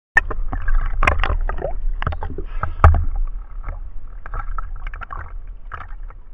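Sea water splashing and sloshing against a camera held right at the surface, in many irregular splashes over a low rumble, loudest in the first three seconds and then easing off.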